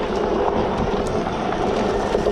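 Steady riding noise from a Super73 R electric bike on a dirt trail: its fat tyres rolling over the dirt and wind rushing over the microphone.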